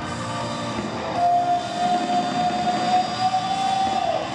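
Live rock band playing, heard from the stands of a large stadium; about a second in, a single long note is held for about three seconds.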